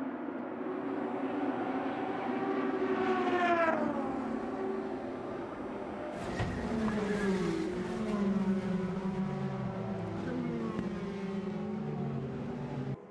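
IndyCar racing cars' twin-turbo V6 engines running at speed on an oval, their pitch falling as cars pass. A sharp crash bang comes about six seconds in, followed by several more cars passing with falling engine notes.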